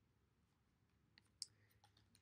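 Near silence broken by a few faint clicks in the second half, the clearest about a second and a half in: small oracle cards being handled and shuffled in the hands.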